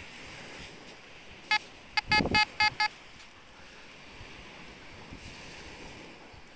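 Fisher F22 metal detector beeping over a buried metal target: one short high beep, then about five more in quick succession, all on the same pitch. A steady hiss of wind and surf runs behind.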